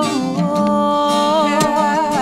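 Acoustic guitar strumming under a woman's voice singing a wordless, humming melody that bends up and down.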